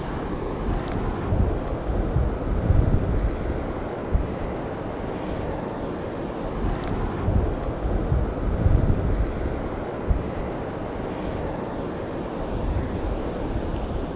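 Wind buffeting the microphone outdoors: a steady rushing noise with low rumbling gusts that swell and ease every second or two.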